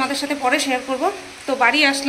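A woman speaking in a clear, fairly high voice, with a short pause about a second in.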